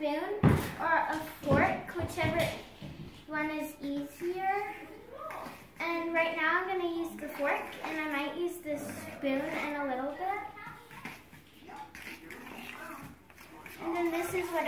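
A child talking, with a couple of sharp knocks in the first two seconds.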